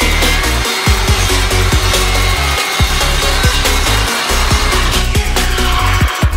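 Circular saw cutting through a wooden sheet, heard under electronic dance music with a heavy bass beat.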